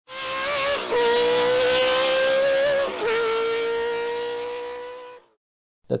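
Formula 1 car engine at high, nearly steady revs, with two brief breaks about one and three seconds in, fading out after about five seconds.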